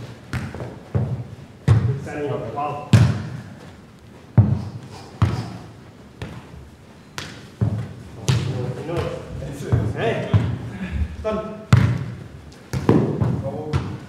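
A football being kicked and bounced on a hard floor in a rally: about a dozen sharp thuds at an uneven pace, each echoing briefly in a large hall.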